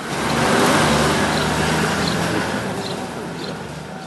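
A motor vehicle's engine running close by, coming up quickly in the first half second and then slowly fading.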